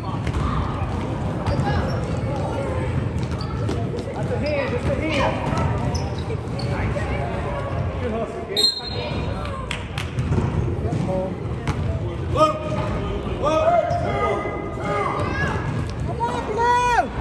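A basketball bouncing on a gym floor during play, with short impacts scattered through, over the calls and chatter of players and spectators in an echoing gym.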